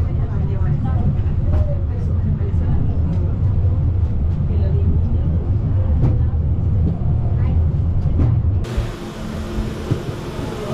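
Low, steady rumble of the Harderbahn funicular car climbing its steep track, heard from inside the car with passengers talking. The rumble stops abruptly near the end, leaving quieter voices.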